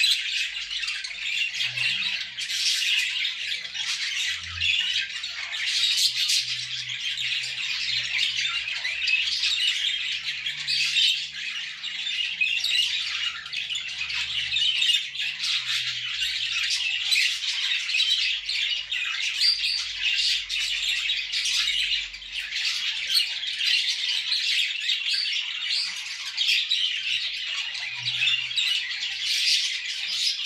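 Budgerigars warbling and calling without a break: a dense, rapid, high-pitched chatter with squawks mixed in.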